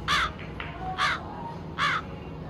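A crow cawing three times, about a second apart, the music cut away beneath it: the stock comic crow-caw sound effect for an awkward, frozen pause.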